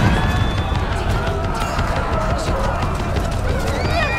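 Battle soundtrack of a village raid: many voices screaming and shouting over a dense low rumble, with scattered knocks and clatter.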